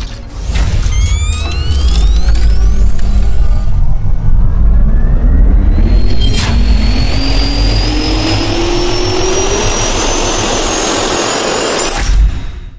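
Intro sound effect of a jet turbine spooling up: a heavy low rumble under whines that climb steadily in pitch, with a sharp hit about six and a half seconds in.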